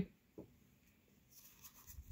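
Faint sliding and rubbing of a stack of Pokémon trading cards being handled, coming in about a second and a half in.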